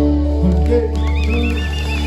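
Live band holding a sustained final chord over steady bass. About halfway through, a high, warbling tone enters above it, wobbling up and down several times a second.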